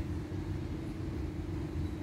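Steady low background rumble with a constant hum, unchanging throughout.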